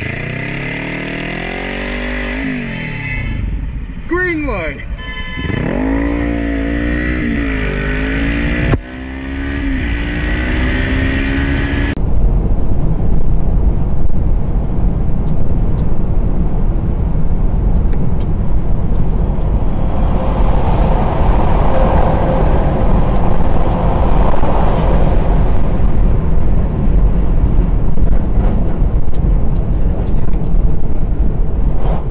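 Sportbike engine revving up and down, its pitch rising and falling several times in the first twelve seconds. It then cuts off abruptly to steady road and wind noise inside a car at highway speed, louder and even, swelling for a few seconds around the middle.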